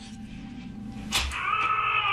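A sharp click about a second in, then a loud, high, held cry of a single steady pitch, like a person wailing, from the TV drama's soundtrack.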